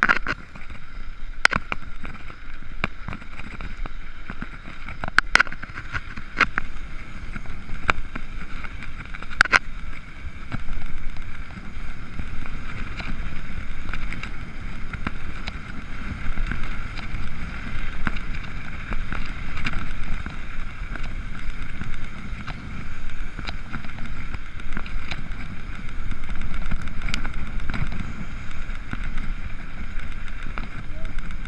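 Mountain bike rolling fast along a woodland trail, heard from a handlebar-mounted camera: steady tyre noise with a low rumble that grows heavier about ten seconds in, and sharp rattling clicks from the bike, most of them in the first ten seconds.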